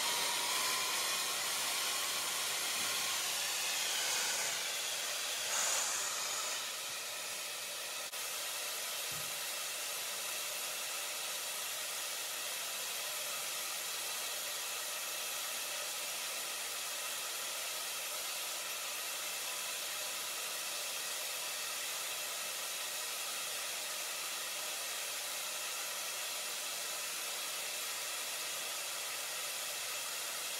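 HausBots HB1 wall-climbing robot's suction fan running steadily: a hiss like a hair dryer with several steady whining tones, holding the robot on a steel wall while weights hang from it. A little louder for the first several seconds, then even from about eight seconds in.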